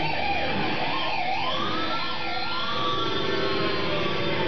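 Live rock band playing, led by an electric guitar solo with wide, swooping pitch bends over the band.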